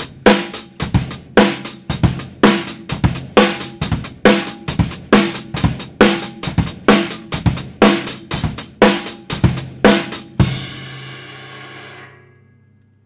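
Acoustic drum kit playing a steady repeating groove of hi-hat, bass drum and snare, demonstrating a basic beginner beat. The playing stops about ten and a half seconds in, leaving a cymbal ringing out and fading.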